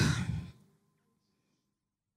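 A woman's voice trailing off breathily at the end of a spoken phrase in the first half second, followed by near silence.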